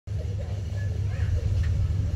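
Outdoor background: a steady low rumble with faint, distant voices over it.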